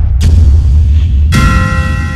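Round-title transition sound effect: a loud, deep rumbling boom with a brief whoosh, then, about a second and a third in, a sudden bright bell-like metallic hit that rings on and slowly fades.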